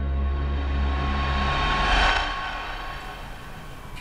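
Film soundtrack: a low music drone with a rushing swell that rises to a peak about halfway through, then both cut off at once, leaving a faint hiss.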